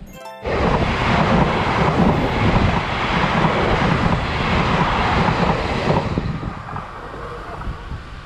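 Taiwan Railways electric passenger train passing close by: a loud rushing of wheels and air with a deep rumble. It sets in suddenly about half a second in and dies away over the last two seconds.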